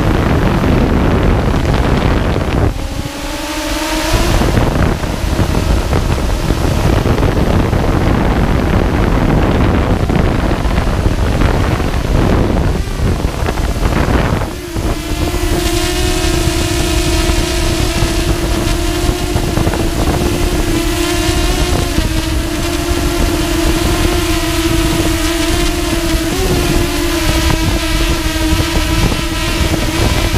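Multirotor drone's electric motors and propellers running, mostly buried in wind rush on the camera microphone for the first half. About halfway through, as the drone comes down near the ground, a steady hum with a clear pitch takes over and holds, wavering slightly.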